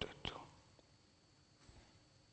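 A brief breathy, half-whispered trailing-off of a man's voice in the first half-second, then quiet room tone.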